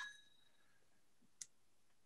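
Near silence just after a wind-up kitchen timer's bell stops ringing, its last ring dying away at the very start, with one sharp click about one and a half seconds in.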